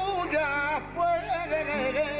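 A male flamenco singer sings fandangos in a wavering, ornamented line, his voice turning up and down on long notes with short breaks between phrases. Plucked flamenco guitar notes come in under the voice near the end.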